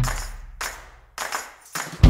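A break in guitar-based intro music: a chord rings out and fades, then three or four short, sharp percussive hits sound before the band comes back in.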